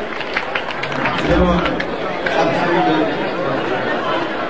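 Crowd chatter at a live reggae concert: many people talking over each other in a large room, on an audience recording.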